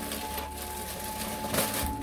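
Clear plastic wrapping crinkling and rustling as it is pulled off a beer dispenser, with a louder rustle near the end.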